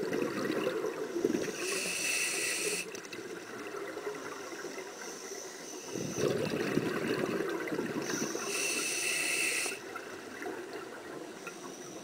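Scuba regulator breathing underwater: two breaths about six seconds apart, each a rush of bubbling exhaust bubbles with a short, high hiss from the regulator near its end.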